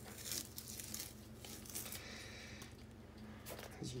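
Blue masking tape being peeled off a sneaker's painted midsole: a soft, papery ripping, with a short rip soon after the start and a longer, steadier peel about halfway through.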